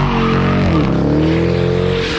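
Car engine revving loudly, its pitch dipping about a second in and then climbing again, with tyre noise.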